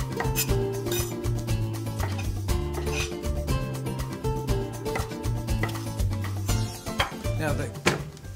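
Knife cutting raw shrimp on a cutting board: a run of short, irregular knife strokes, over steady background music.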